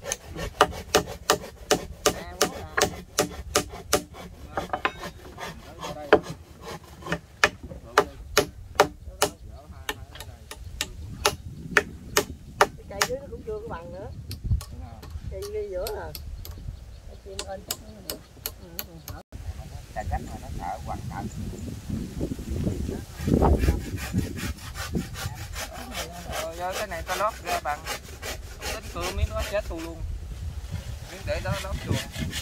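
Hand saw cutting wooden planks in steady back-and-forth strokes, about two to three a second, then a lull. After the lull the strokes come quicker.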